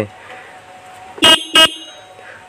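TVS Ntorq scooter's disc horn giving two short toots about a quarter second apart, a little over a second in. It sounds clear and full, its loose wiring connector freshly tightened to cure a weak, intermittent horn.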